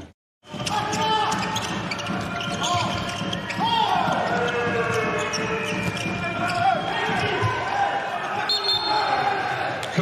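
Live court sound of a handball game in an empty hall: a handball bouncing on the court floor, shoes squeaking, and players shouting, all echoing in the hall. It starts after a half-second gap.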